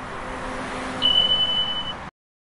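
Subscribe-animation sound effect: a steady hiss, then a single high-pitched beep about halfway through that holds one pitch for just under a second, as the notification bell is pressed.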